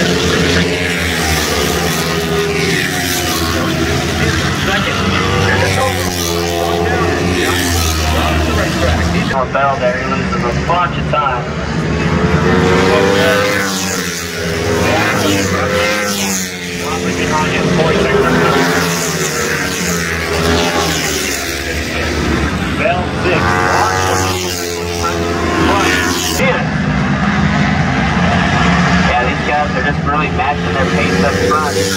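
A pack of flat-track racing motorcycles lapping the dirt oval, their engine notes repeatedly rising and falling in pitch as they go by, mixed with a public-address commentator's voice.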